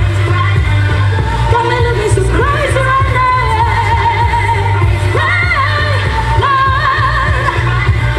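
A woman singing a pop melody over amplified dance music with a steady heavy bass beat.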